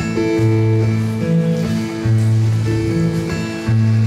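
Acoustic guitar strummed between sung lines of a folk song, its chords changing about once a second.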